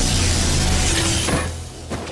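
Cartoon action soundtrack: music mixed with a dense, noisy wash of fight effects, dying away about one and a half seconds in.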